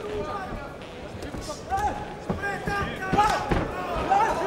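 Dull thumps of gloved punches landing in a boxing exchange, several in the second half, over shouting voices in the hall.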